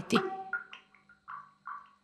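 A few soft water drips, short plinks at uneven intervals, over a faint steady hum.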